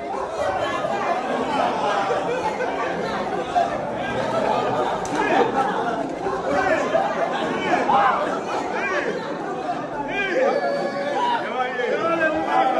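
Several people talking over one another at once, a steady overlapping chatter of voices.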